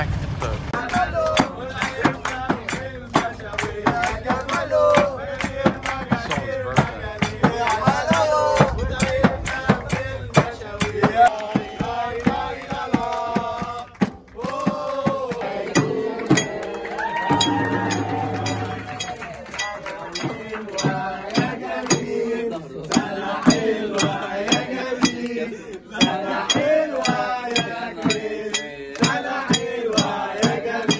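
Several men singing together to a steady beat struck on a hand frame drum, with hand-clapping, with a brief break about halfway through.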